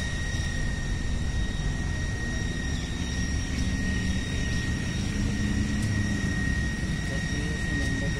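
Jet aircraft engine running, a steady high whine over a low rumble.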